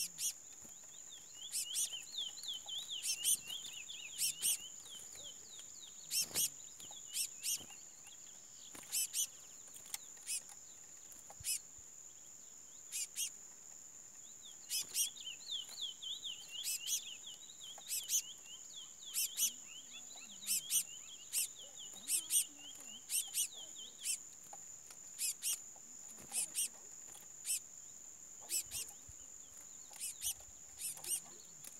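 Curiós (chestnut-bellied seed finches) calling and singing: frequent short, sharp call notes throughout, with two stretches of rapid warbling song, one a couple of seconds in and a longer one from about the middle for some eight seconds, over a steady high whine.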